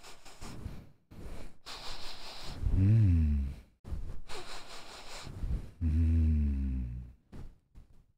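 A man breathing in deeply through a T-shirt held over his face, sniffing the fabric, with two long, low voiced exhales: the first about three seconds in, the second about six seconds in.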